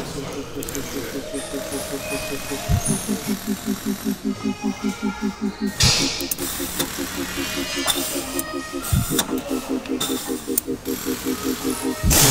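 Background music with a steady pulsing beat: short repeated notes about two to three times a second, with a low swoosh every few seconds.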